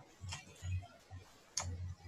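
Computer mouse clicking: two sharp clicks, one just after the start and one about a second and a half in, with soft low thumps between them.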